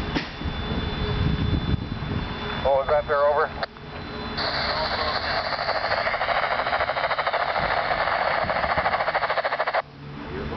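Railroad scanner radio: the fading rumble of the train rolling away, then a short warbling tone about three seconds in, followed by about five seconds of harsh radio static that cuts off suddenly just before the end.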